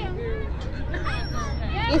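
People chattering in the background, over a low, steady engine hum.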